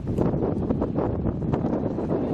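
Wind buffeting the microphone: a steady, low, ragged rumble.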